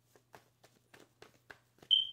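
Faint irregular clicks and taps, about three a second, from tarot cards being handled, over a low steady hum. Near the end comes a single short, high electronic beep that quickly fades, the loudest sound.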